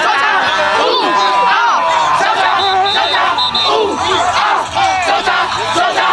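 Youth football players yelling together, many voices shouting over one another in a team battle cry.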